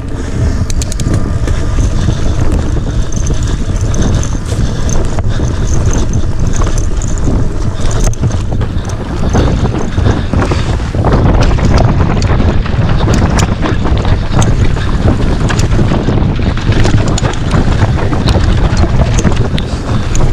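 Mountain bike riding fast down a rough forest trail, heard through an action camera's microphone: heavy wind buffeting and tyre rumble, with frequent sharp clicks and rattles from the bike over rough ground.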